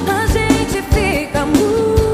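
Live brega band music: a singer holding wavering notes with vibrato, ending on one long held note, over keyboards and a steady drum beat.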